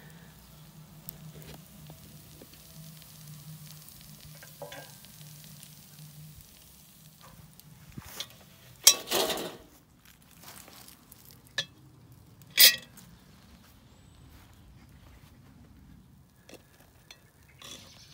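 Cast-iron Dutch oven and its lid being handled over a metal fire pit: quiet scrapes, then a few sharp metal clanks, the loudest about nine and thirteen seconds in.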